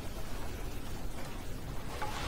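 Steady faint hiss of background room noise, with no distinct events.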